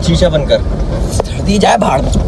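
A car's low, steady rumble heard inside its cabin, under brief bursts of a man's speech.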